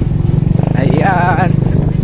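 Motorcycle engine running steadily with a fast, even pulse. A voice calls out briefly about a second in.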